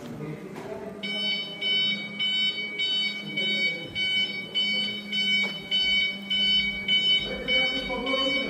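Electric forklift's reversing alarm beeping evenly, about two and a half beeps a second, starting about a second in, over a low steady hum.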